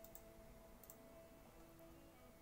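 Faint computer mouse clicks over near silence: two near the start and another pair about a second in.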